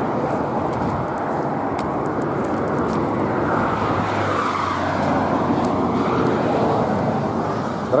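Highway traffic noise: a steady roadside rumble, with one vehicle passing that swells and fades in the middle.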